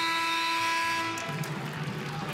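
Basketball arena's game-clock horn sounding one steady blast with several tones at once, signalling the end of the third quarter; it cuts off about a second in.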